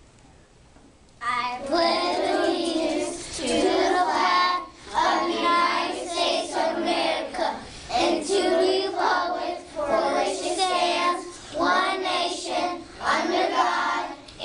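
A class of young children reciting the Pledge of Allegiance together, starting about a second in, one phrase at a time with short breaks between phrases.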